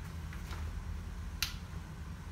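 A single sharp click from the UPPAbaby Vista stroller's frame about one and a half seconds in, as its latch is worked by hand, over a low steady room hum.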